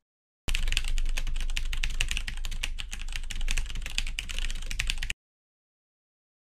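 Computer keyboard typing sound effect: a fast, continuous run of key clicks that starts about half a second in and cuts off abruptly about five seconds in.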